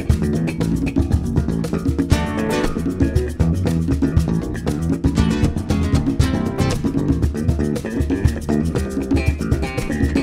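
Live nuevo flamenco band playing instrumentally: acoustic and electric guitars over bass guitar and hand percussion, with a steady rhythm of short strikes throughout.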